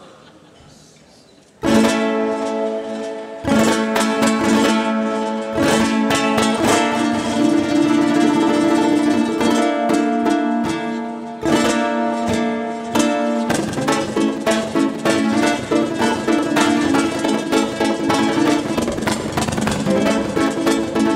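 Amplified ukulele playing a flamenco piece: after a short hush, a strummed chord rings out, a second follows a couple of seconds later, then the playing goes into rapid flamenco-style strumming with sharp accented chords.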